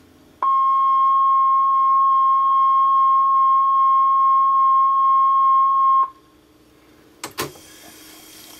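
A steady, loud, single-pitched tone played back off the tape through the speaker of a 1967 Panasonic RQ-706S reel-to-reel recorder, lasting about five and a half seconds and cutting off abruptly; it is typical of a reference or end-of-tape tone on a broadcast spot tape. A little over a second later comes a mechanical click from the machine's control lever being switched.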